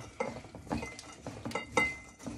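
A utensil knocking and scraping in a bowl of spice-coated pecans as they are mixed: several separate knocks, two of them with a short ringing clink from the bowl.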